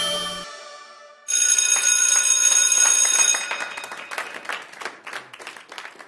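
The song's electronic dance backing fades out in the first second. After a short gap, a bright, bell-like chime jingle with a quick run of tinkling strikes starts and slowly dies away.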